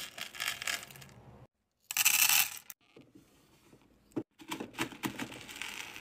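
Hard wax beads scooped with a metal scoop and poured, a dry clattering rattle in three bursts, the loudest about two seconds in.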